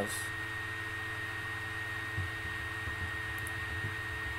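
Steady electrical hum and hiss of the recording setup, with a thin high whine held throughout; a couple of faint ticks come about three and a half seconds in.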